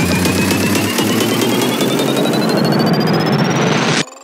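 Dark psytrance build-up: a steadily rising sweep over dense, noisy synth layers. The rolling bass line cuts out about a second in, and the build breaks off suddenly at the end.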